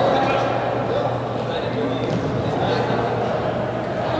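Indistinct shouts and calls of players echoing in a large indoor sports hall, over the steady din of the game.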